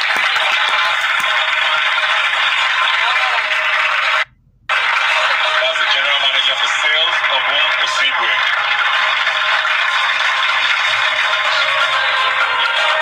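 A studio audience applauding and cheering, heard thin and narrow as if re-recorded from a broadcast stream. The sound cuts out for about half a second around four seconds in.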